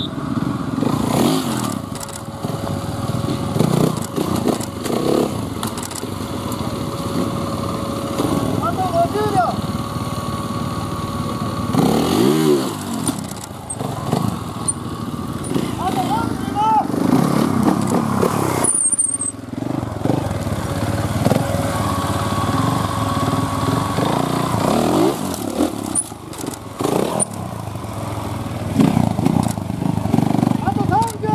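Trials motorcycle engine running and revving in short bursts as the rider climbs and balances over rocks, with a clear rev sweep about halfway through. People's voices are mixed in.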